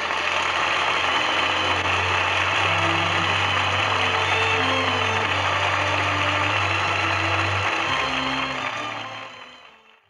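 Steady hiss and low hum of an old radio broadcast recording, with faint music notes under the noise. It fades out over the last two seconds as the recording ends.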